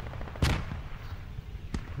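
A single sharp crack like a distant gunshot about half a second in, with a short echoing tail, and a much fainter tick near the end.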